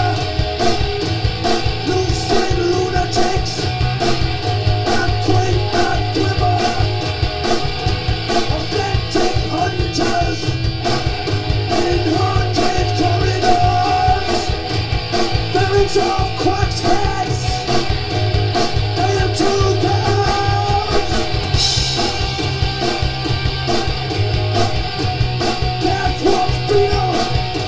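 Live rock band playing loudly: electric guitar through a Marshall amplifier over a steady beat, with a man singing into the microphone.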